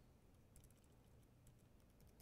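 Faint computer keyboard typing: soft key clicks, a cluster about half a second in and a few more later, over near-silent room tone.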